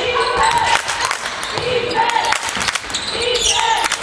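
Basketball being dribbled on a hardwood court, a run of irregular sharp knocks, with players' voices calling out in an echoing sports hall.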